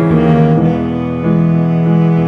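Instrumental passage of piano and a bowed string section with cello and violins, playing sustained chords that change about every half second.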